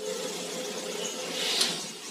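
Steady low hum inside a car cabin, with a brief soft hiss about a second and a half in.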